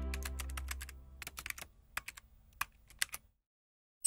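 Keyboard-typing sound effect: a quick, uneven run of key clicks lasting about three seconds, under the fading tail of a low synth chord in the first second.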